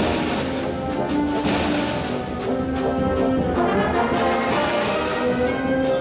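Concert wind band playing, with brass prominent in sustained chords and a bright noisy wash in the first couple of seconds.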